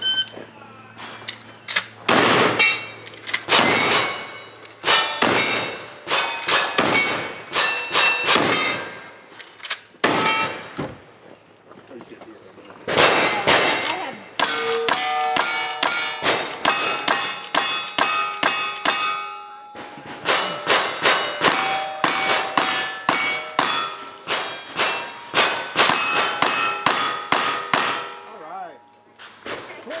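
A string of quick gunshots at steel plate targets, a lever-action rifle among the guns. Each hit is answered by the ringing clang of steel. The shooting breaks off for a couple of seconds about ten seconds in, then resumes in fast runs.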